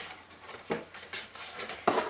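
Folded card packaging of a sheet facial mask being opened and handled: a quiet rustle with a few sharp ticks, one a little under a second in and another near the end.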